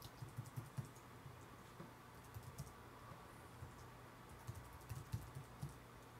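Faint computer keyboard typing, in three short runs of keystrokes with pauses between them.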